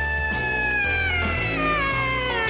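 Alto saxophone in a jazz band holding one long high note that then slides slowly down in pitch from about a second in, over bass notes.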